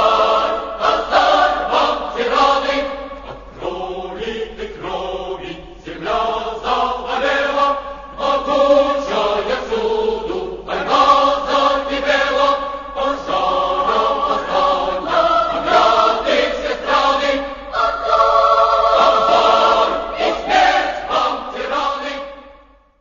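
A choir singing a Russian revolutionary song in sustained phrases, with a softer passage a few seconds in.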